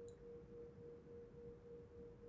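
Near silence: room tone with a faint, steady single-pitched tone just under 500 Hz that neither swells nor fades.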